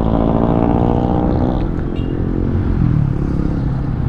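Motorcycle engine running at low revs, a steady low hum, as the bike rolls slowly up to a stop.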